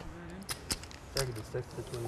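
Clay poker chips clicking against each other as a player handles his stack: several separate sharp clicks.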